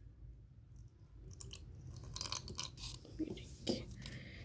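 Faint clicks and scrapes of a spoon against the inside of a cup holding a little liquid, starting about a second in.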